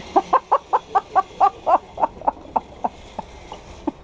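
A person laughing hard: a long run of quick 'ha' pulses, about four a second, that slowly spread out and fade.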